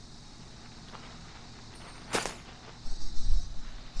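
Quiet outdoor background, then one sharp click about halfway through, followed near the end by loud, irregular rustling and thumps of movement through dry vines and grass.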